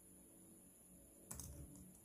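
Faint laptop keyboard keystrokes: one sharper key tap about a second in, then a few softer taps.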